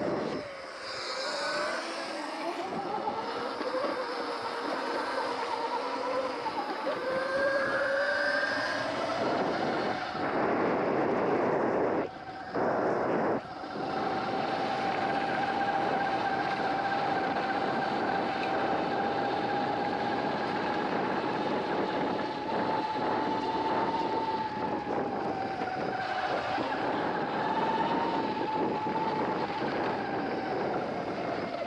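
Electric bike motor whining under way, its pitch wandering up and down with speed for the first half and then holding a steady high note. It runs over constant wind rush and tyre noise, with two brief dips in level about halfway through.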